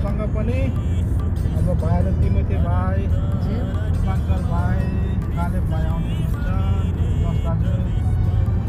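Steady low rumble of a car's engine and tyres heard from inside the cabin while driving, with voices and music over it.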